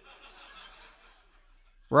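Faint, scattered chuckling and laughter from an audience.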